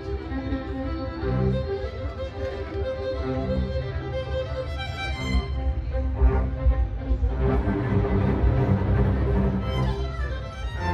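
A string ensemble of violins with cello plays live, bowing sustained melodic lines.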